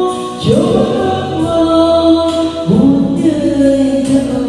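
A woman singing into a handheld microphone over backing music, holding long notes; a new sung phrase starts about half a second in and another near three seconds.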